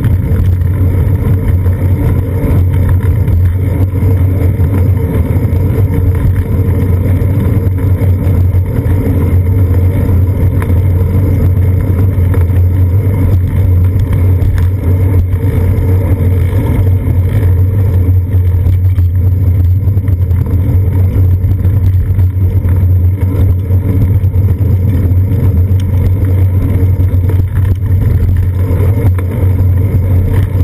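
Steady, loud low rumble from a moving bicycle's seat-post-mounted GoPro Hero 2: wind buffeting the camera and road vibration coming up through the bike frame, with no distinct events.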